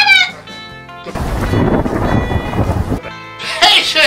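A thunder sound effect: a rumbling crash lasting about two seconds, about a second in, over a background music track.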